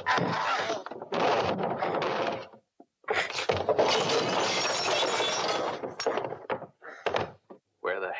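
Fight sound effects of a man crashing into saloon furniture: wood breaking and furniture clattering in two long, loud spells, then a short knock near the end.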